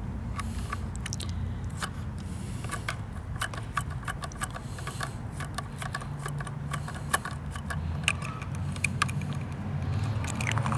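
Small irregular clicks and scrapes of a 1:34 scale diecast garbage truck's cart tipper and a miniature plastic trash cart being worked by hand, over a steady low hum.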